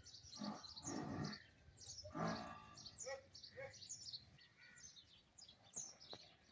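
Small birds chirping in quick, short calls again and again. Two louder, lower sounds come about half a second in and a little after two seconds.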